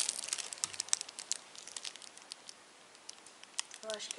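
Thin plastic zip bag of capacitors crinkling as it is handled, with dense crackling in the first second or so that thins out to a few scattered crackles and a quiet stretch.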